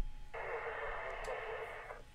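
Air traffic control radio channel keyed open with no voice: a burst of thin radio static hiss, about a second and a half long, starting a moment in.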